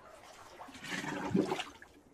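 Bathwater sloshing and splashing as a person slides down and submerges her head in a foamy bath, swelling to a peak about one and a half seconds in before settling.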